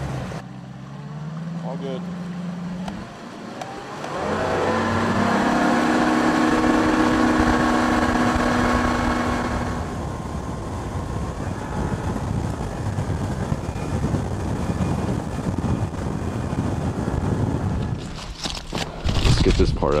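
Bass boat's outboard motor running under way with wind and water rush, its drone louder from about four seconds in. Near the end, aluminium foil crinkles as a burrito is unwrapped.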